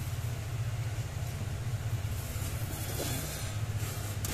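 A steady low mechanical hum that drones on evenly without change.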